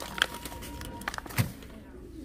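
A plastic bag of pink Himalayan salt crinkling in a few short bursts as it is handled and set back on the shelf.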